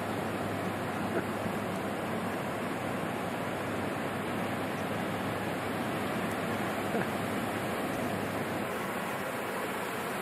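Steady rush of ocean surf breaking, with a faint tick or two.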